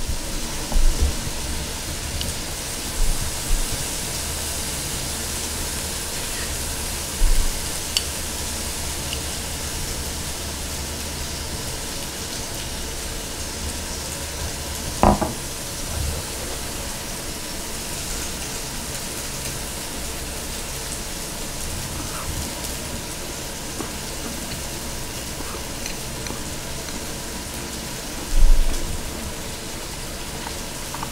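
Meat sizzling on a hot grill plate, a steady frying hiss, with a few dull knocks of chopsticks and bowl; the loudest knock comes near the end.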